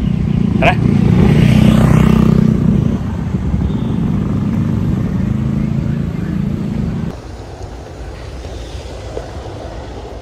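A motor vehicle's engine running close by, a steady low rumble that is loudest a second or two in and drops away sharply about seven seconds in.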